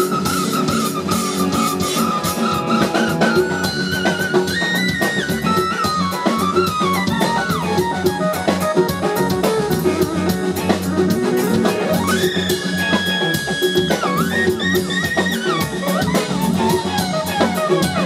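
Live funk band playing: a drum kit groove with bass, keyboard and congas under a lead line of sliding, bent and wavering high notes.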